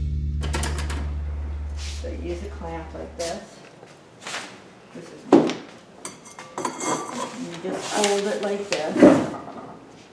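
Background music fades out over the first few seconds. Then come a few sharp knocks and clatter, the loudest about five and nine seconds in, as metal glaze-dipping tongs clamp and lift a ceramic bowl, with faint voices in between.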